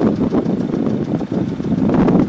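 Vehicle engine idling steadily, a low even running sound.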